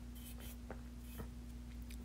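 A few faint, small clicks and scratchy rustles over a steady low electrical hum: quiet room tone with light handling noise.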